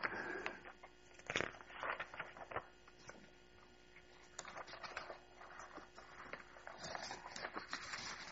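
Faint rustling and handling of paper notes being leafed through, with scattered small clicks, over a steady electrical hum.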